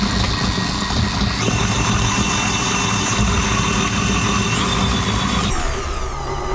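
Electric stand mixer running, its beater working through mashed potato in a steel bowl: a steady motor hum with a whine that steps up in pitch about a second and a half in and again near five seconds, then drops off sharply just before the end.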